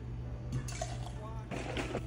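Liquor poured from a bottle through a steel jigger into a stainless cocktail shaker tin, as two short, faint splashing pours.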